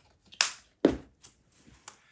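Two sharp clicks about half a second apart, the second with a dull knock, then a few faint taps: a plastic paint bottle and a paper cup being handled and set down.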